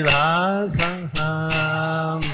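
A man's voice singing a devotional bhajan in long held notes, accompanied by small brass hand cymbals (kartals) clashed in a steady rhythm, about three strikes a second, each leaving a bright ring.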